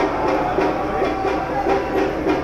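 Crowd of football fans chanting a song together over a steady drum beat.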